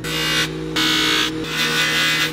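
Electric bench buffer running with a steady motor hum. A steel dagger part is pressed against the spinning cloth buffing wheel three times in short passes, each swelling into a hiss, buffing off its black oxide finish.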